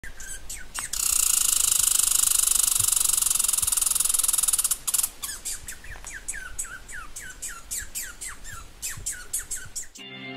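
Birdsong: a few chirps, then a loud, very rapid buzzing trill lasting about four seconds, followed by a string of short down-slurred chirps, about two a second.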